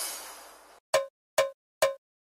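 Break in a DJ battle mix: the music's tail fades away, then three short pitched percussion hits about half a second apart ring out in silence.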